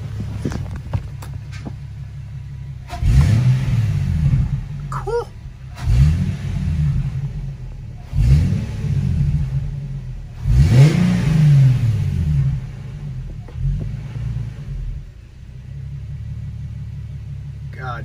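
Infiniti G37's 3.7-litre V6 idling and revved four times, each rev rising and falling back to idle, then blipped lightly a couple of times. Newly fitted open cone air filters let the intake be heard sucking in air.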